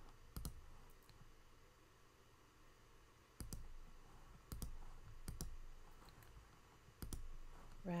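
Computer mouse clicking: about five sharp, separate clicks spread a second or more apart, some in quick press-and-release pairs.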